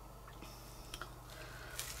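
Quiet pouring of glittery epoxy resin from a silicone cup into a silicone mould, with a few faint ticks as the wooden stirring stick touches the cup, over a low steady hum.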